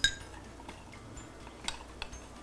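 Metal spoon stirring flour into milk in a glass measuring jug: one ringing clink of spoon on glass right at the start, then quiet stirring and a small tap near the end.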